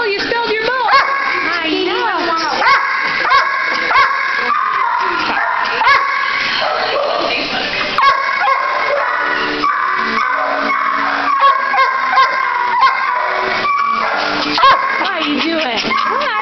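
Many kennelled dogs barking, yipping and whining at once in a steady, overlapping din, with louder single barks standing out every second or so.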